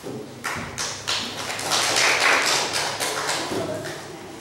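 A small group clapping hands: a dense patter of claps that builds to its loudest about two seconds in, then thins out near the end.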